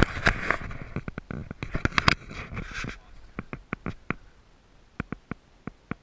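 Camera handling noise: a rush of rubbing and scraping against the microphone in the first second or so, then scattered sharp clicks and taps, sparser in the second half.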